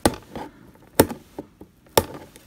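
Three sharp clicks about a second apart, with fainter ticks between, from fingers picking at the sellotape on the base of a cardboard box and handling the box.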